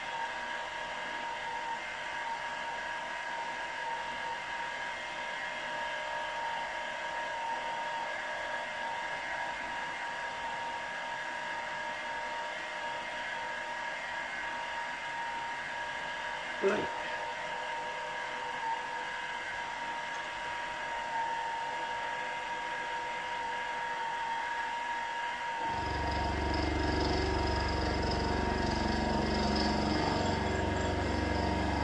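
Milling machine spindle running steadily with a steady whine; a single knock about 17 seconds in. Near the end a deeper, louder rumble joins the whine.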